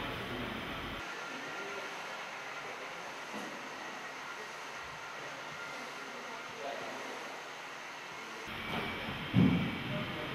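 Steady background hiss and hum of room ambience. The low rumble drops away about a second in and comes back near the end, where a brief, loud, low thump sounds.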